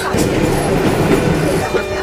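Paris Métro train running, heard from inside the carriage as a loud, steady rattle and rush of the moving car.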